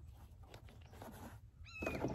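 A bird calling once near the end: a short, clear note that rises and then falls in pitch, the first of a repeated series.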